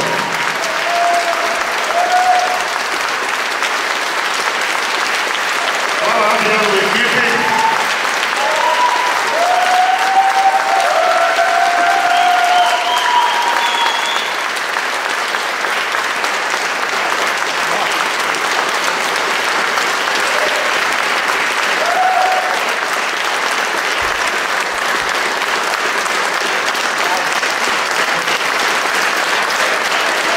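A concert audience applauding steadily, with voices calling out now and then in the first half.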